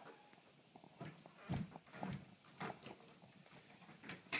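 Faint footsteps of a person walking indoors, a run of soft thumps at about two steps a second starting about a second in.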